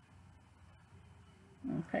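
Near silence, only faint room tone, for most of the time; a woman's voice starts speaking near the end.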